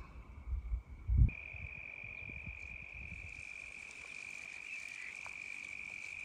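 An insect trills steadily on a single high pitch, starting about a second in and continuing without a break. A brief low thump comes just before the trill starts.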